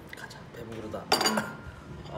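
A drinking glass set down on a wooden table with a single short clink about a second in.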